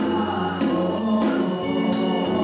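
Temple ritual chanting: several voices sing together over accompanying instruments, with small percussion keeping a steady beat.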